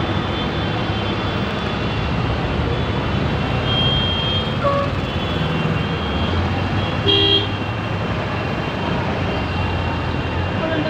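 Road traffic: vehicle engines running steadily, with a short car horn honk about seven seconds in and fainter, shorter horn beeps a few seconds earlier.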